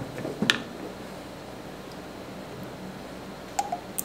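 Quiet room tone broken by a few light clicks and knocks as a plastic pitcher of lye solution is picked up and tipped to pour: one click about half a second in and two more near the end.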